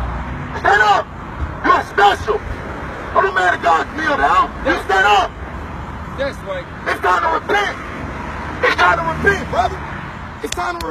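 Men's voices talking in short, indistinct phrases, over a steady low rumble of street traffic.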